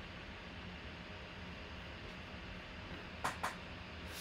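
Low steady room hum and hiss, then two quick sharp clicks in close succession near the end.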